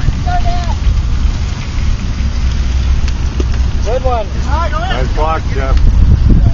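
Wind buffeting the microphone with a steady low rumble, while several people shout in the distance in quick succession near the end.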